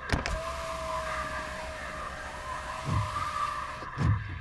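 Car power window motor whining steadily as a window rolls up, starting with a sharp click and cutting off just before a low thud.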